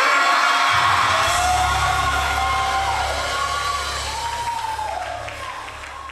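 Gospel worship music at the close of a song: a held low bass or keyboard note under voices calling out, with the congregation cheering, all fading out steadily.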